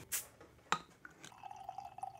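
A small beer bottle being opened: a short burst of noise as it comes open and a sharp click a moment later. Then the stout starts pouring into a glass, steadily from a little over a second in.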